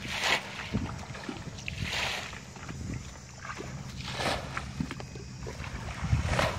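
Water splashing about every two seconds, three times, as buckets of water are thrown out while a shallow flooded patch is bailed, over steady wind noise on the microphone.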